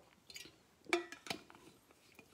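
A few faint clinks and knocks from a drinking vessel being handled and set down after a sip, the loudest about a second in.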